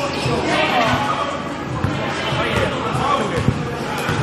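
Basketball bouncing on a gym floor in a large hall after a made basket, with one sharper thud about three and a half seconds in, among players' voices.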